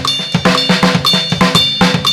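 Drum kit playing a salsa beat at 120 BPM: a steady, even stream of stick strokes on the drums over the bass drum pedal, with a ringing metallic tone on top.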